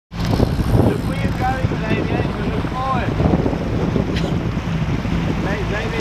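Wind buffeting the microphone over the steady low running of an inflatable coaching boat's outboard motor, with faint voices in the background.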